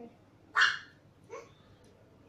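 A husky gives a short, sharp bark about half a second in, then a fainter, shorter second bark.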